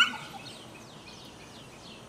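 A puggle's single short, high yip, rising in pitch, right at the start. After it come faint, short, falling bird chirps.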